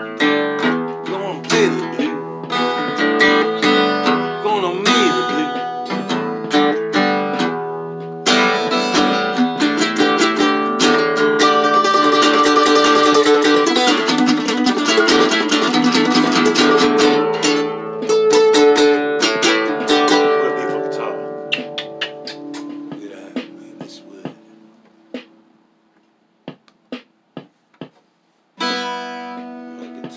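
Acoustic guitar strummed in chords, densest in the middle stretch, then left to ring and fade away. A few single plucked notes follow, and strumming starts again just before the end.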